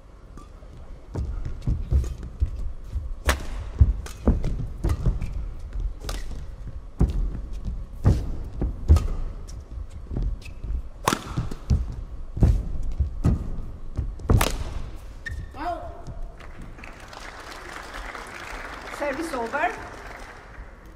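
A badminton singles rally: racket strings striking the shuttlecock in sharp cracks, with thudding footfalls and lunges on the court. The exchange runs for about thirteen seconds and then stops, followed by short shoe squeaks and, near the end, a burst of noise with a voice in it.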